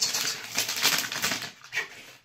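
Cough drop wrappers crinkling in the hands: a rapid run of crackles that fades out about one and a half seconds in, with one short crackle after.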